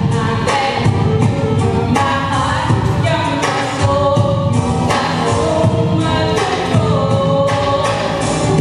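A girls' vocal group singing a song together in harmony, several voices at once with lead singers out front.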